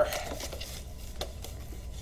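Faint handling of cardboard packaging from a headset box: light scraping and rustling, with a soft tap about a second in.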